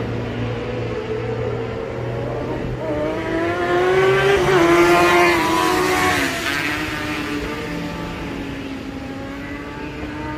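Track-day motorcycles running on the circuit: one engine note climbs in pitch and grows louder as a bike approaches, is loudest around the middle, then drops in pitch and fades as it passes and goes away.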